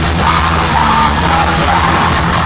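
Loud heavy rock music with a shouted, yelled vocal over a full band.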